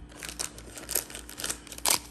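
A foil trading-card pack crinkling as it is drawn out of the cardboard hobby box and handled, a run of small crackles with one sharper, louder crackle near the end.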